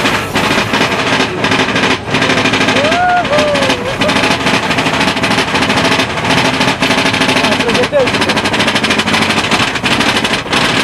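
Mine-train roller coaster heard from on board: a loud, fast and continuous clatter of clicks and rattles as the train runs along its track. A brief rising-and-falling, voice-like tone comes about three seconds in.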